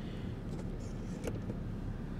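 Steady low hum of a vehicle cabin's background noise, with a faint click or two about a second in.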